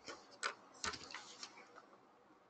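Several faint, sharp clicks scattered irregularly through a quiet room.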